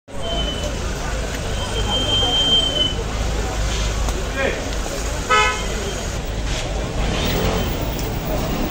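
A short, sharp car horn toot about five seconds in, the loudest sound. Under it are a steady low rumble of street traffic and scattered voices of a crowd standing in the street.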